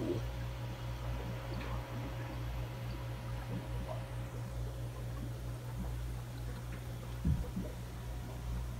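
Steady low mechanical hum of aquarium equipment, such as filters and pumps, with a single thump near the end.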